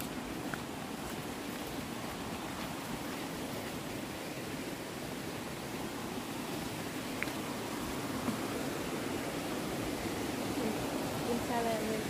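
Steady rushing outdoor noise that grows slowly louder, with a person's voice starting near the end.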